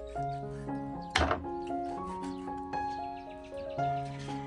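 Gentle instrumental music. About a second in, a loud thunk as a knife chops through a milkfish onto a wooden chopping board.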